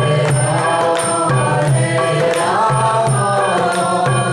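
Men singing a devotional Vaishnava chant (kirtan) to a mridanga, a two-headed barrel drum, beating a steady rhythm, with a high metallic ringing keeping time.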